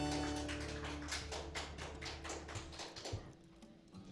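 Acoustic guitars' closing chord ringing and fading away, with a run of soft quick strokes on the strings as it dies out.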